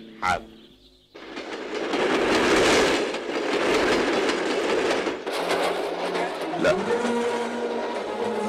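A fast train running close past: a loud, steady rush of carriages and wheels on the rails. It cuts in suddenly about a second in.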